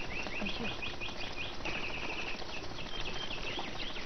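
Small birds chirping in quick runs of short high notes, several a second, over a faint steady background.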